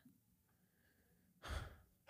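Near silence, then a short breathy exhale into the microphone about a second and a half in.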